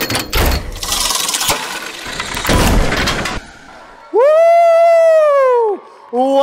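Title-animation sound effects: a run of crashing, shattering impacts and whooshes as the words land, then a loud held pitched tone about four seconds in that swells and bends down as it fades out.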